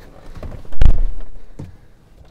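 A single loud, low thump about a second in, heard inside a pickup truck's cab, followed by a short fading rumble.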